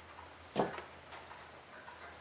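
A single light knock about half a second in, followed by a few faint ticks, from hands handling wood on a plywood router-table jig; the router is not running.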